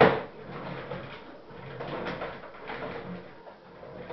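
A loud thump right at the start, dying away quickly, followed by quieter, irregular knocks and handling noise.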